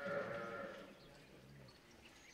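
A single bleating call from a farm animal, wavering in pitch and lasting a little under a second at the start, in a cattle shed.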